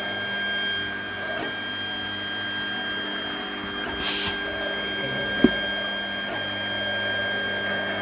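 Monoprice Select Mini 3D printer running the first layer of a PETG print: its motors and cooling fan give a steady whirring whine as the print head moves. A brief hiss comes about four seconds in, and a sharp click a little after five seconds.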